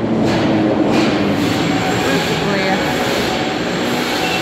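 Metro train running in the station: a loud, steady rumble with a low electric hum, and faint voices mixed in.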